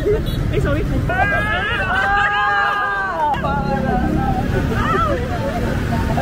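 A person's long, high-pitched "Aaahh!" shriek lasting about two seconds, over city street traffic with a car passing close by and people talking.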